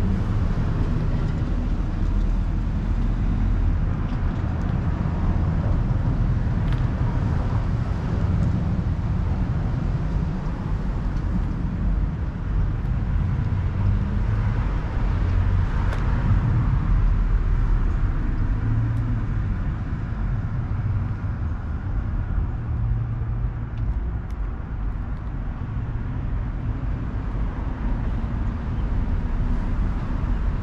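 Street ambience: a steady low rumble of road traffic, with one vehicle swelling past about halfway through.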